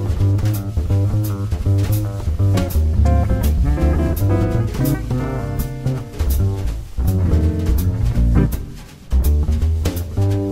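Recorded jazz trio playing a bop tune: a double bass line under a drum kit's cymbal strokes and guitar. The music dips briefly near the end.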